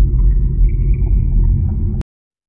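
Deep, loud rumbling drone of a cinematic title-intro sound effect, with a faint high tone above it; it cuts off suddenly at the end.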